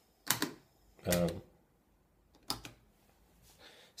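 Two sharp knocks or clicks, one just after the start and one about two and a half seconds in, the second followed by a couple of lighter ticks, with a man's short 'um' between them.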